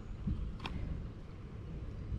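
Low wind rumble on the microphone, with one faint click about two-thirds of a second in.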